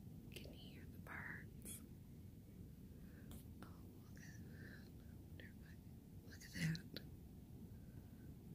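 Faint whispering or muttering by a person over a quiet low rumble, with one short, louder voiced sound about two-thirds of the way through.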